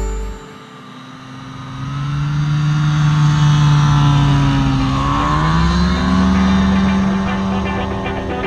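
Engine of a Rocky Mountain Ridge Runner 1 plane running at takeoff power during its takeoff run. The steady drone grows louder, dips in pitch about five seconds in, then rises again.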